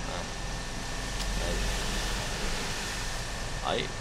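Steady airflow hiss, a little louder in the middle, with one faint click about a second in.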